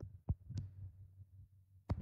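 A few brief, soft knocks and clicks over a faint low hum, the handling noise of a phone being moved and brushed while it records.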